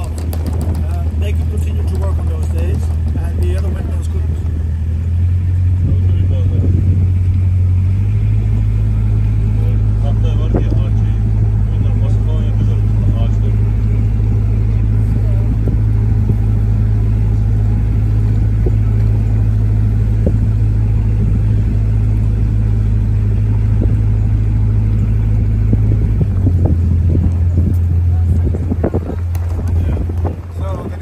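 A small boat's motor droning steadily as it cruises, the low hum rising in pitch about eight seconds in and falling back about four seconds before the end.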